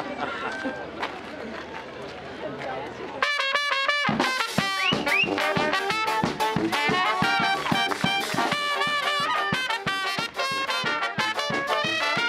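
Crowd chatter, then, about three seconds in, a Spanish charanga brass band strikes up loudly: trumpets, trombones, saxophones and sousaphone over a steady drum beat.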